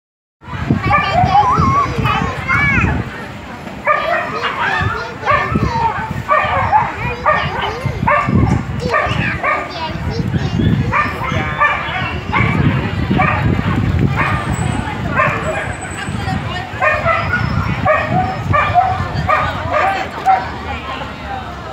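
Several people talking, with a dog barking now and then.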